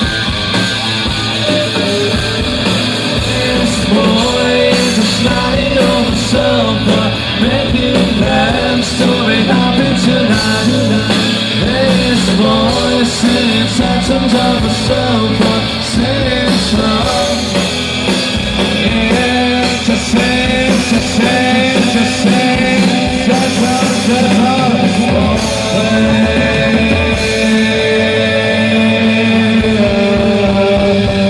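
Live rock band playing: electric guitars over a drum kit with frequent cymbal hits, through a PA and heard from among the audience.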